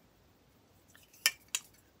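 Mostly quiet, then two light clicks a little over a second in, about a third of a second apart: a small metal aerosol body-spray can and its plastic cap being handled.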